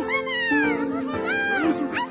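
Cartoon cat meowing several times over steady background music.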